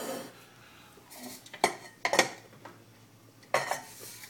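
Metallic clinks and knocks from handling an aluminium LS1 cylinder head: a few sharp knocks about a second and a half in, again half a second later, and a final one near the end.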